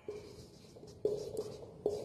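Marker writing on a whiteboard: the tip strokes and taps against the board four times, each tap with a brief low ring from the board.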